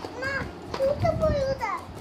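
A young child's high-pitched voice vocalizing in short bursts, without clear words.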